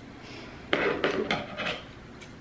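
Plant Velcro (hook-and-loop tie) rasping as it is pulled and wrapped around a plant stem: one sharp rip about two-thirds of a second in, then three shorter tears close together.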